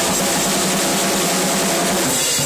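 Ludwig drum kit played loudly without a break, a dense continuous wash of drums and cymbals that rumbles steadily rather than falling into separate strokes.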